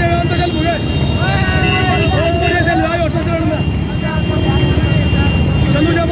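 Raised voices calling out over a loud, steady low rumble of wind and vehicle noise.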